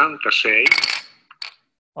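A man counting numbers aloud to test his S and T sounds with a new implant-retained denture. About half a second in there is a sharp, high hiss with a ringing edge that cuts off a second in.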